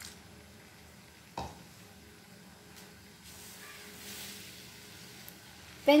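Quiet kitchen sounds of a wooden spatula stirring a thin milk and cornflour mixture in a metal pan just after water is poured in, with one light knock about a second and a half in and a soft hiss for a couple of seconds in the second half.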